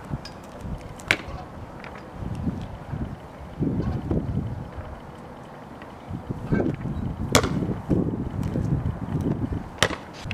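Wind buffeting the microphone in gusts, with three sharp knocks: one about a second in, a louder one about three-quarters of the way through, and another just before the end.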